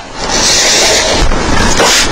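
A saw-handled veneer cutter with two spaced knives drawn through veneer along a straight edge, one steady scraping stroke of a little over a second and a half, cutting an inlay strip.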